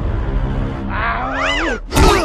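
Background music with a low rumble under it, then about a second in a cartoon animal cry sound effect that rises and falls in pitch, cat-like.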